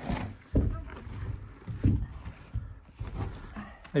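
Stone blocks and plaster rubble being worked loose by hand from a blocked-up stone window opening, with several dull knocks and scrapes of stone on stone.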